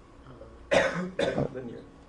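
A man coughing twice, two short coughs about half a second apart.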